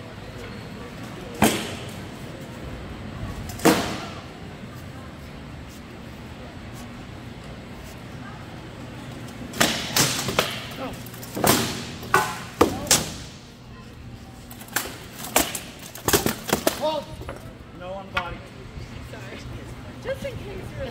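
Rattan swords striking shields and armour in SCA heavy armoured combat: two single sharp blows early on, then a quick flurry of strikes from about halfway through, over a steady murmur of voices in the hall.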